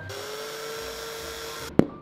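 A power drill running with a steady, slightly rising whine for under two seconds, cut off abruptly. Then one sharp knock as a plastic drywall anchor is tapped into a drilled hole.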